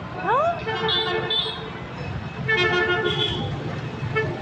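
Vehicle horns honking twice, each a steady, held note of about a second, with a brief gliding sound just before the first.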